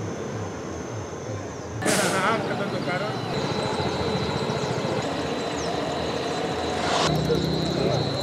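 Outdoor ambience with distant voices of people talking. The sound jumps abruptly louder about two seconds in and shifts again near the end, and a faint steady high whine runs through the middle.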